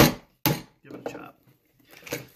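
Two sharp wooden knocks about half a second apart: a mallet striking a chisel, chopping a mortise in a clamped piece of wood.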